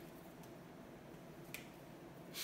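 Near silence, broken by a faint click about half a second in and a sharper click about one and a half seconds in: a whiteboard marker's cap being pulled off.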